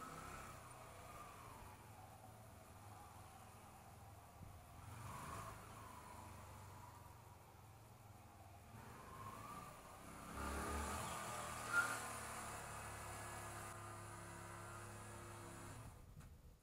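Distant Yamaha YBR125 single-cylinder four-stroke engine revving up and down in short bursts as the motorcycle is ridden through the cones. It is faint, grows louder about two-thirds of the way in, and has one short sharp sound shortly after.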